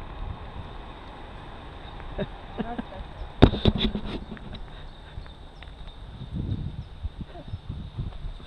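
Wind rumbling on an action camera's microphone, with a quick cluster of sharp knocks and clicks about halfway through as the camera is handled.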